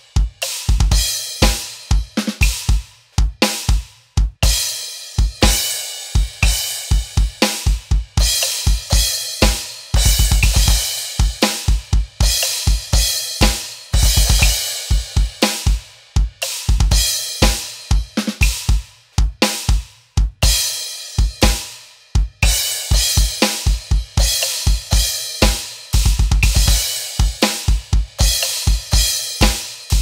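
Electronic drum kit playing a slow prog-metal double bass drum groove at 60 bpm: kick and snare strokes with hi-hat and cymbal crashes accenting the riff. Several times the double pedal fires a quick run of rapid bass drum strokes.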